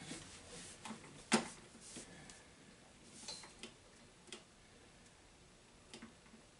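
A few scattered, sharp clicks and taps from a hand working a computer at a desk, the loudest about a second and a half in, over quiet room tone.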